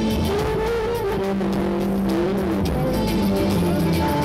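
Loud music with a steady beat and a held lead melody that slides between notes, played over loudspeakers.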